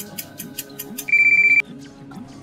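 Quiz countdown timer ticking rapidly over soft background music, then about a second in a loud, rapidly pulsing electronic ring lasting about half a second: the time-up alert as the answer is revealed.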